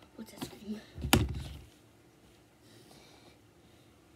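A few short vocal sounds, then one loud thump about a second in, like something knocking against the recording phone.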